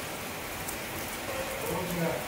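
Steady rain falling on rooftops: an even, unbroken hiss.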